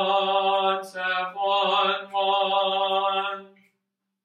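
A single voice chanting without accompaniment, holding long syllables on one steady pitch with brief breaks between them, then stopping near the end.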